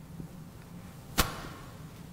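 A single sharp knock about a second in, with a short ring after it, over faint steady room tone.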